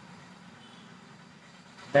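Faint steady background noise, room tone, in a pause between a man's spoken phrases; his voice comes back at the very end.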